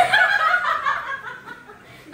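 Two women laughing together, loudest in the first second and trailing off near the end.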